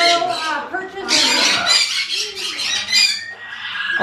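Parrots squawking and chattering, a dense run of high, wavering calls from about a second to three seconds in, mixed with people's voices.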